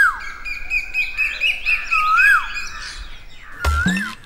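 Birds chirping, with many short high notes and, twice, a clear whistled call that rises and then drops sharply.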